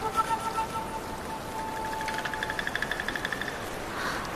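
Soft background music: a held note, then a quickly repeated high note pulsing about ten times a second through the middle.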